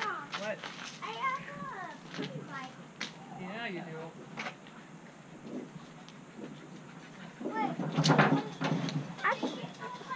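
Faint, indistinct voices of children and adults talking, with a louder burst of noise about three-quarters of the way through.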